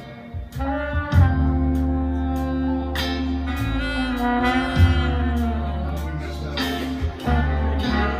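A live band with a horn section plays under a woman's sustained singing, over heavy bass and a steady drum beat of about two strokes a second. The music is played back through speakers and picked up by a phone's microphone.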